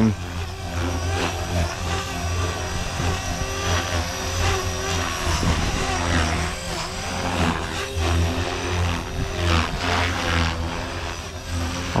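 Blade Fusion 360 3S electric RC helicopter flying aerobatics: a steady drone from the main rotor blades with the whine of the electric motor and drive gears. The tone wavers and the loudness dips and swells as it flips and changes direction.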